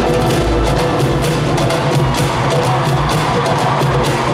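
Loud live pop music echoing in an arena, with a steady bass line under quick, sharp percussion clicks.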